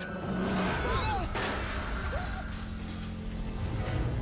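Cartoon sound effects of a small cart racing along a track: a steady rushing rumble with a sharp crash about a second and a half in, and a couple of short yelps from the riders.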